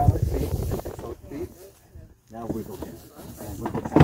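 Indistinct voices of people talking close by, with a short lull about halfway through.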